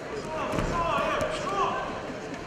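Shouting voices of coaches and spectators in a wrestling arena, with dull thuds of the wrestlers' bodies and feet on the mat as one is taken down, the heaviest about half a second in.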